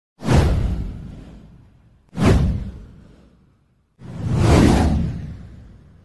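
Three whoosh sound effects for an animated title intro, about two seconds apart. Each one hits and then fades away over a second or more, and the third swells in more gradually before fading.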